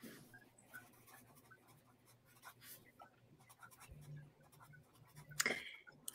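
Quiet room tone with faint, scattered scratchy clicks, and a short louder rustle near the end.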